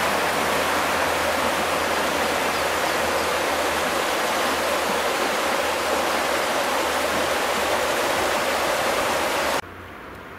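River water rushing over shallow rapids and stones, a steady, even rush that cuts off suddenly near the end.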